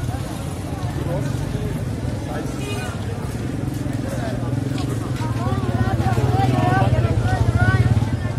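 Crowd chatter, several voices talking over one another, over a steady low motor-vehicle engine rumble that grows louder in the last few seconds.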